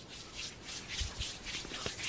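Handling noise: a hand rubbing and brushing over the camera's microphone in a run of short scrapes, with a soft bump about a second in.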